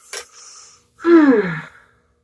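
A woman's quick breath in, then a short wordless vocal sound whose pitch falls steadily, like a drawn-out sigh.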